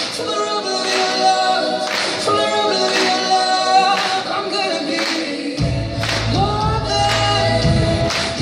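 A pop song performed live: sung vocals over hand claps on the beat, with bass and drums coming in about five and a half seconds in.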